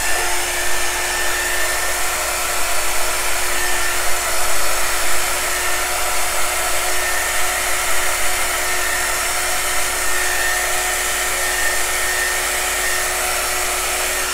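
Handheld heat gun (heat wand) running steadily, blowing air across wet acrylic paint: an even rush of air over a constant motor hum.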